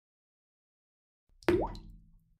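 Short intro logo sound effect: a sudden pop about one and a half seconds in, with a quick upward-sliding pitch and a low rumble that fades away within under a second.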